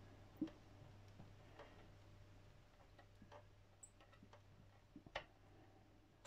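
Near silence with a few faint, scattered clicks and ticks of a small screwdriver turning a tiny screw into a plastic model part, the sharpest click near the end.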